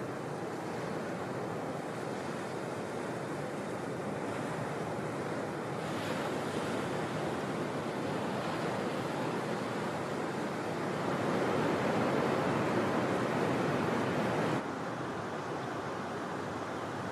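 Breaking ocean surf: a steady rush of whitewater that swells louder for a few seconds near the end, then drops off suddenly.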